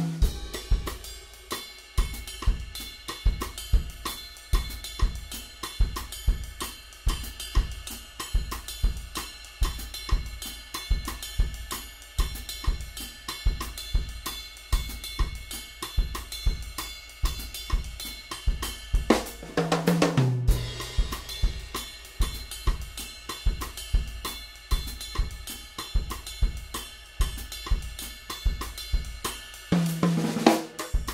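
Drum kit groove played with sticks: a ride pattern on a Zildjian 22" K Constantinople Bounce Ride, whose wash is full of complex overtones with no definite pitch, over steady kick and snare. A fill runs down the toms about two-thirds of the way through, and another comes at the very end.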